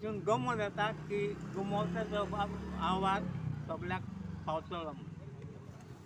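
A man speaking, over the low hum of a passing motor vehicle that builds in the middle and fades near the end.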